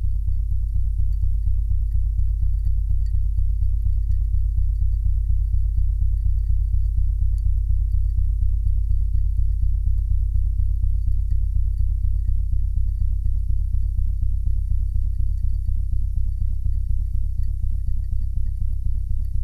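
Low, steady rumbling drone that throbs evenly several times a second, with almost nothing above the deep bass.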